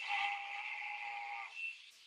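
A few held steady tones over a steady hiss, stopping about one and a half seconds in: the opening of a YouTube video's soundtrack just started on the computer.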